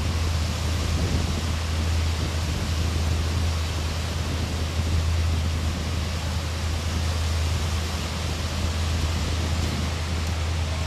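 Steady wind noise buffeting the microphone with a constant low rumble, mixed with Lake Ontario waves washing ashore.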